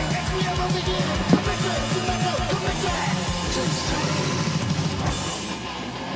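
Old-school thrash-style speed metal song playing, with fast, driving drums under distorted guitars. There is one louder hit just over a second in.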